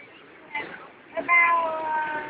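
A drawn-out, high-pitched voice-like call, held for about a second and sliding slowly down in pitch, starting a little past the middle.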